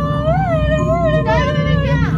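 High-pitched, drawn-out frightened whining from young women, the pitch wavering up and down without forming words, over a low steady hum.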